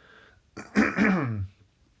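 A person clearing their throat once: a single loud burst about a second in, lasting under a second.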